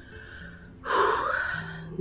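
A person's loud, heavy breath, about a second long, starting about halfway in, over quiet background music with held notes.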